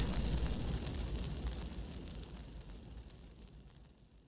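Fire crackling with many small pops, fading out steadily to near silence.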